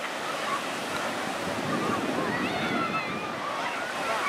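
Atlantic surf breaking and washing up a sandy beach, a steady wash of noise, with faint distant voices and calls from people in the water over it.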